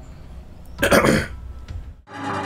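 A man clearing his throat once, a short rough rasp about a second in. The throat-clearing comes from extra mucus after he inhaled hot oil dabs.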